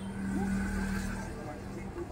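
Steady low hum of the Epson printer's small drive motor running, louder for about the first second and a half and then quieter. This is the motor whose weak rotation the repairer found to be the cause of the printer's all-lights-blinking error.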